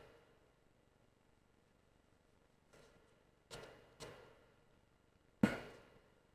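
Mostly quiet, with a few faint, short handling sounds of a vape coil head being screwed into the Kanger Subtank's metal base; the loudest, a brief click, comes about five and a half seconds in.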